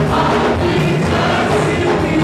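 A church congregation and choir singing gospel music together, loud and steady.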